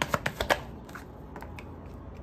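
A tarot deck being shuffled by hand: a quick run of card flicks that stops about half a second in, followed by a couple of faint taps.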